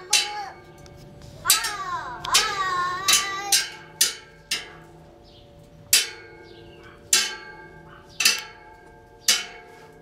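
Metal railing bars being struck repeatedly, about ten clanging hits that each ring on, settling to roughly one hit a second in the second half. A young child's wavering voice sounds over the first few hits.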